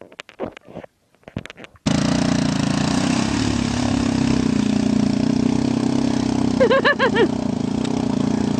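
A few short knocks, then from about two seconds in a quad bike's engine running steadily as it drives through river water, with the hiss of splashing spray. A voice whoops briefly near the end.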